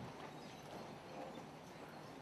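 Faint shuffling and scattered light knocks of an audience getting to its feet from auditorium seats for a moment's silence, over a steady low electrical hum.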